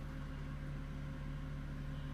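Steady mechanical hum inside an elevator cab, with a few low steady tones under an even hiss.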